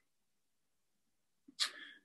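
Near silence, then about one and a half seconds in, a man's short, sharp in-breath through the mouth, starting with a small lip click, drawn just before he speaks again.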